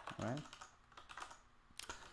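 Computer keyboard keys being typed in quick, irregular strokes while text is edited, with two sharper key clicks near the end.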